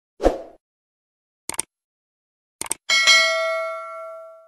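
Edited-in sound effects: a short thud, two pairs of quick clicks, then a bright bell-like ding that rings on and slowly fades.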